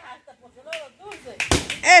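A single sharp knock about a second and a half in as a child's stick, swung at a piñata, strikes, with a cheering voice right after.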